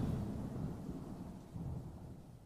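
A low rumble dying away as the song ends, swelling briefly near the end before fading further.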